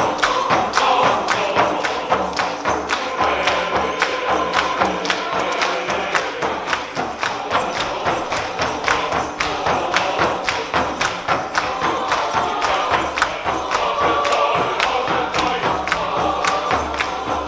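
A mixed choir singing, with a steady beat struck on a handheld frame drum, about two to three strikes a second.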